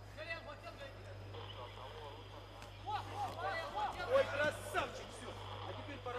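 Indistinct voices calling and shouting in an arena, louder and busier in the second half, over a steady low electrical hum; a single sharp knock about four and a half seconds in.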